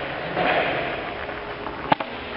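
Steady classroom background noise with a short rush of noise about half a second in, and a single sharp click near the end.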